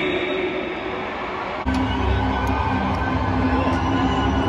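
Stadium crowd noise, then an abrupt change about one and a half seconds in to loud, sustained low droning music over the concert sound system, with the crowd underneath.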